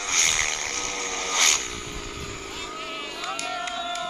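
Racing vehicle engines passing at full throttle, their pitch falling as they go by, loudest at the start and again about one and a half seconds in, with spectators shouting.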